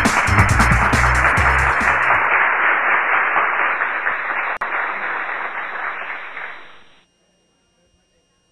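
Electronic intro music with a drum beat that cuts off about two seconds in, then a bar crowd's noise from a camcorder's soundtrack: a dense, steady hiss of applause and chatter that fades out and stops about seven seconds in.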